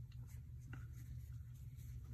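Faint rustle of yarn being worked with a crochet hook while a double crochet stitch is made, with a soft tick about three-quarters of a second in. A steady low hum runs underneath.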